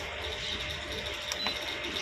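A short high electronic beep from the aquarium's touch-control panel about a second and a half in, as its button is pressed to set the clock, over a steady background hum.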